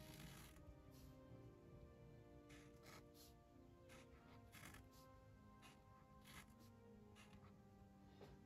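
Near silence: very faint background music, with a few short, faint scratches of a Uni Posca paint marker drawing small strokes on sketchbook paper.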